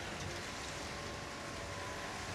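Steady, even hiss of the hydroponic grow room's ambience, with faint held tones underneath.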